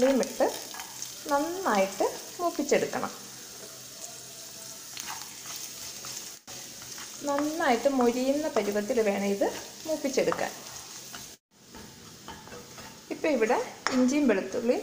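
Chopped garlic and ginger sizzling in hot oil in a nonstick kadai, stirred with a spatula.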